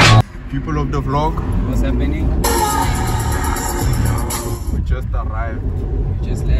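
Inside a moving Volkswagen Polo: a steady low engine and road rumble, with a voice talking quietly now and then. Background music cuts off at the start, and a loud hiss lasts about two seconds in the middle.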